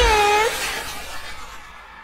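Isolated live female pop vocal, the backing track removed, singing the song's last word 'dice' as a short held note of about half a second that dips and recovers in pitch, followed by a wash of noise that fades steadily away.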